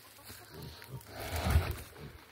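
A single low grunt from a kunekune pig about a second and a half in.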